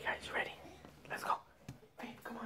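A person whispering two short phrases.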